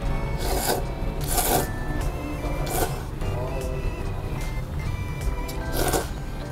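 A person slurping thick Jiro-style ramen noodles and broth in four short, loud slurps spread across the few seconds, over background music.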